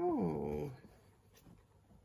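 A single short voiced call, under a second long, sliding down in pitch right at the start, then quiet.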